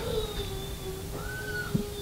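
Faint held musical tones: one steady low note lasts throughout, and a brief higher note arches up and back down about a second in.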